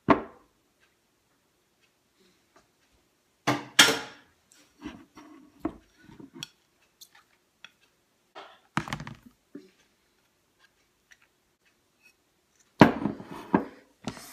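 A metal spoon and a rubber spatula knocking and scraping against a bowl and a plastic food container: scattered clatters and clicks, with louder knocks about four seconds in, around nine seconds, and near the end.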